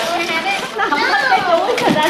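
Several children and adults talking and exclaiming over one another, with excited children's voices.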